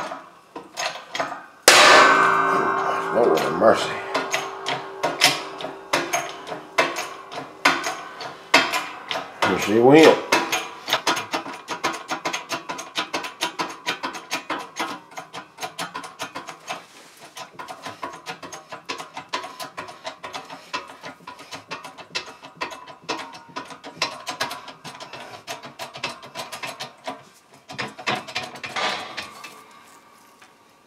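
Background music with a beat over repeated mechanical clicking from a shop press, whose ram is forcing a bolt down against a steering-shaft coupling pin to drive the pin out.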